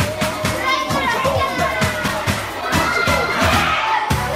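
Many children's voices calling out and chattering over background pop music with a steady beat.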